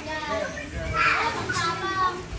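Background chatter of several voices, children's voices among them, with no clear words.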